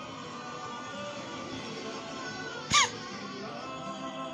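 Cartoon soundtrack background music heard through a television speaker. Nearly three seconds in comes a single short, loud squeaky chirp with a sharp click.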